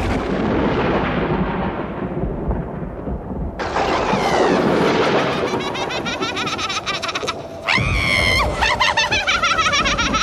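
Thunder in a storm: a clap just before the start rumbles away over the first three seconds, then a second swell of storm noise builds from about four seconds in. A high, wavering cry sounds briefly about eight seconds in.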